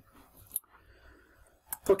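Quiet room tone with a single short, sharp click a little over a quarter of the way in, then a man's voice starting near the end.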